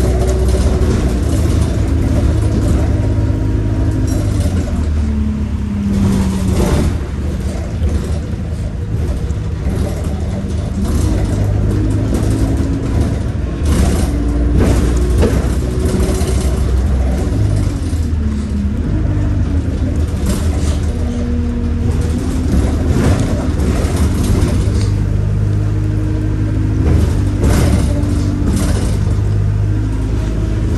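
Cabin noise of a single-deck bus on the move: a steady low engine and drivetrain rumble, with a pitched whine that rises and falls several times as the bus speeds up and slows. Sharp rattles and knocks from the body and fittings come through every few seconds.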